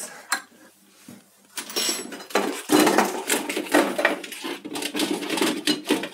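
Glass jars and plastic food containers clinking and clattering in a kitchen drawer as they are rummaged through. The clatter starts about a second and a half in and grows busy and continuous.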